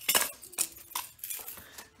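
A puppy moving about in a hard plastic tray: a few short, sharp clicks and knocks on the plastic, the loudest at the very start.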